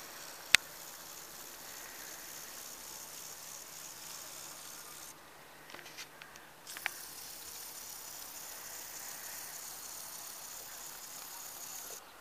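Faint, steady high hiss of outdoor background noise picked up by a handheld camera's microphone, with one sharp click about half a second in and a few small clicks around six seconds in.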